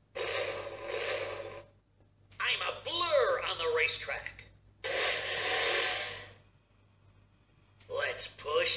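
VTech Switch & Go Dinos remote-control toy car playing its electronic start-up sounds through its small speaker in three bursts: a dense rushing noise, a warbling sound with sweeping pitch, then a hiss that stops suddenly about six seconds in.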